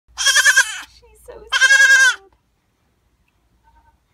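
Young goat kid bleating twice: two loud, wavering calls about a second apart, the second slightly longer.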